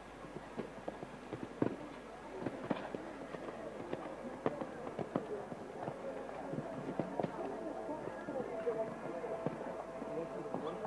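A show-jumping horse cantering on a sand arena, its hoofbeats coming as sharp thuds about twice a second, with voices murmuring in the background.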